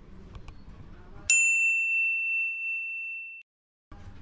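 A single bright, bell-like ding about a second in, ringing out and fading for about two seconds before it stops abruptly. The background hiss drops out the moment it starts, so it is a ding sound effect laid over the footage. Before it there is faint background noise with a couple of small clicks.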